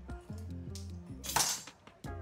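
Background music with a steady bass line. About one and a half seconds in comes a short noisy scrape of a wooden spoon against a cooking pot as bolognese sauce is ladled out.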